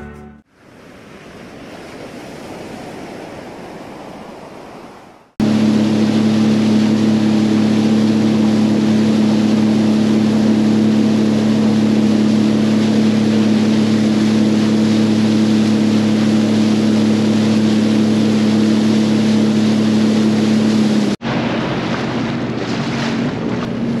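A soft whoosh swells and fades at the start. Then comes a steady engine hum at one unchanging pitch under wind and water noise, which cuts off abruptly a few seconds before the end and gives way to a quieter engine-and-water sound.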